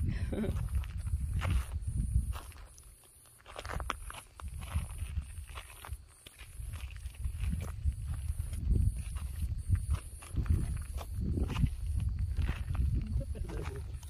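Footsteps crunching on a gravelly dirt road, irregular, over a fluctuating wind rumble on the microphone.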